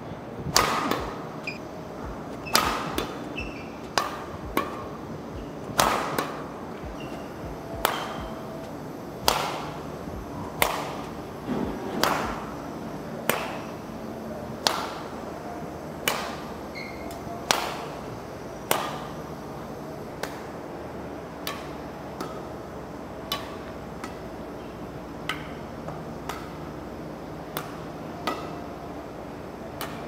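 Badminton rackets striking shuttlecocks over and over in a multi-shuttle drill: sharp hits with a short echo, the loudest coming about every second and a half through the first two-thirds, then fainter and more spread out.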